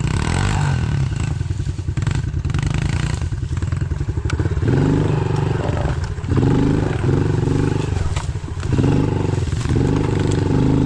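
Honda pit bike's small single-cylinder four-stroke engine running at low speed, then blipped through several short bursts of throttle in the second half. Scattered sharp clatters sound over the engine in the first half.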